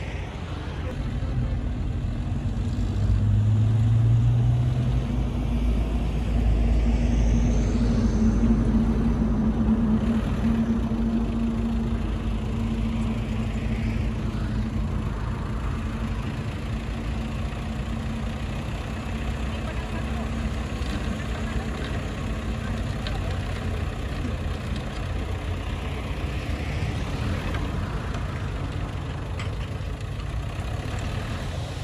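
Heavy diesel machinery engine running steadily, louder over the first ten seconds with a brief rise in pitch about three seconds in, then settling to an even run.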